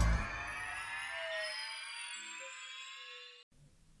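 The end of a TV programme's opening theme music: a cluster of tones slowly rising in pitch, with a few held notes underneath. It fades out over about three seconds and ends in a moment of silence.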